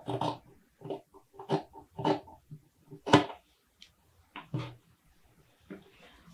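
Scissors cutting through fabric on a tabletop, a series of short, unevenly spaced snips as the neckline is trimmed.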